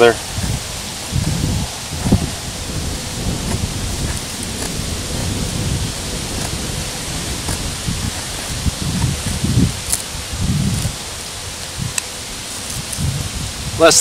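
Multi-tool knife blade shaving thin curls off a stick to make a feather stick, giving faint, scattered scraping strokes. Steady wind noise with irregular low rumbles on the microphone sits over it.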